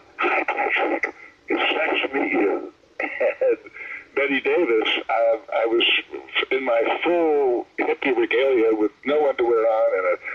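Speech only: a person talking in steady phrases, the voice thin with little low end.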